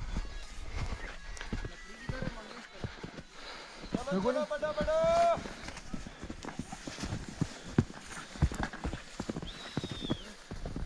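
Footsteps crunching in deep snow, a string of irregular soft knocks, with one long call that rises in pitch and then holds about four seconds in. A short high falling whistle comes near the end.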